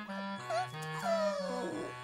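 Cartoon puppies whimpering over light background music; the longest cry falls slowly in pitch across the middle.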